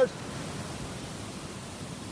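Steady wash of surf breaking and running up a sandy beach.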